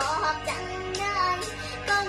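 A young girl singing a Thai song in the Isan dialect over a backing track, her voice sliding and wavering along the melody.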